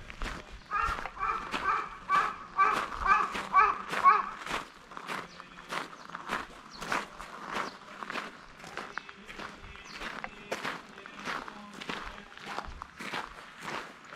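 Footsteps on gravel, about two steps a second. A run of short, repeated pitched calls over the first four seconds or so is the loudest sound.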